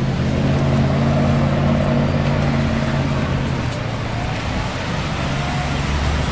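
Street traffic: a motor vehicle's engine running close by with a steady low hum that fades after about four seconds, over a constant traffic noise.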